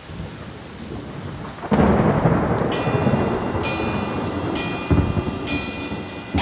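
Rain falling onto wet asphalt, then a sudden loud rumble of thunder about two seconds in that rolls on, flaring again near five seconds.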